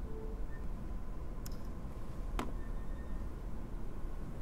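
Quiet room tone of a lecture hall: a steady low hum, broken by two light clicks, the sharper one about two and a half seconds in.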